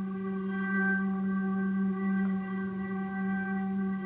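A bowed double bass and a male dhrupad voice sustain one long low note together, a steady drone with bright overtones and only slight wavers, ringing in the reverberation of a stone church.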